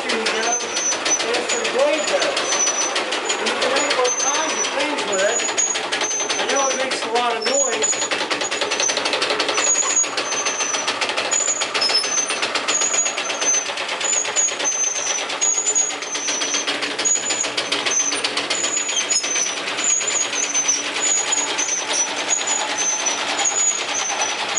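Pedal-powered scroll saw (a velosiped from about 1900) running, its reciprocating blade cutting a block of wood with a rapid, even rattle of strokes. Voices murmur over it for the first several seconds.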